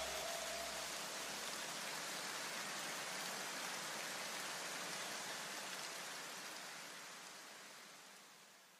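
A soft, even hiss like rain that slowly fades away, the noise tail left after the background music stops. A few leftover low notes die out in the first second or two.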